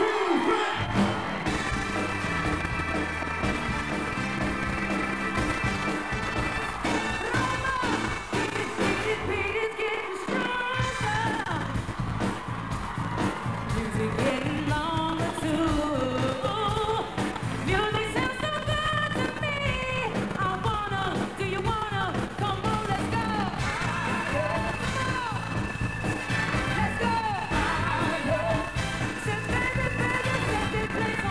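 Live band opening a song with sustained keyboard chords. Drums and bass come in with a full beat about ten seconds in, and a woman's voice sings over it.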